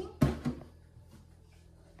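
Two quick hard knocks about a quarter second apart near the start: a measuring cup tapped against the rim of a metal cooking pot after pouring milk into it.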